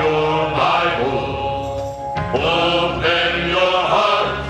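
Male vocal group singing a gospel song together, holding long notes, with a brief break about two seconds in before the next phrase.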